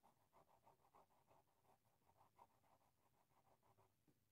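Faint scratching of a felt-tip marker on paper in quick short strokes, several a second, as a sharp corner between two lines is rounded off and filled in.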